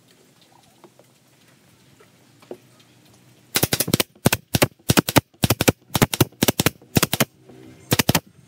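Pneumatic brad nailer firing a quick run of sharp shots, about three to four a second, some in quick pairs, driving brads through a thin strip into a wooden board. The shots start about three and a half seconds in.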